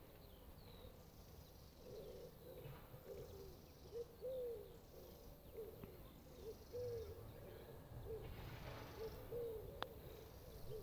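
Pigeon cooing over and over in short, low hooting phrases. Just before the end comes a single sharp click of a putter striking a golf ball.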